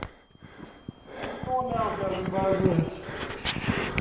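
A person's voice, not clearly worded, from about a second in, over the footsteps and breathing of a hiker climbing stone steps.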